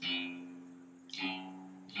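Electric guitar playing single notes: two notes plucked about a second apart, each ringing and fading away.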